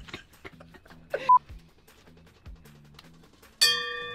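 Faint background music with a short laugh about a second in, then near the end a single sudden bell-like strike that rings on with several steady tones.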